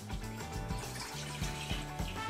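Milk pouring in a steady stream from a mug into a bowl, under background music.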